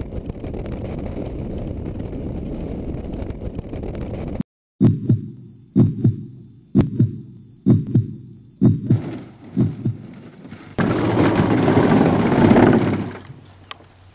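Steady engine and wind noise of an ultralight trike, cut off abruptly. Then a slow heartbeat sound effect, about one beat a second. Near the end comes a couple of seconds of loud scraping rush as the trike's wheels skid to a stop on grass and dirt.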